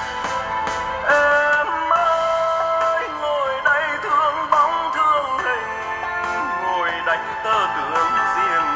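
A Vietnamese ballad with a singing voice played through a pair of bare 16.5 cm Japanese-made bass drivers with no cabinet, as a sound test of the drivers. An instrumental passage gives way to the voice about a second in, singing an ornamented, wavering melody.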